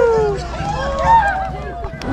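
Several people's voices calling out and talking in a crowd, with a long falling call trailing off just after the start.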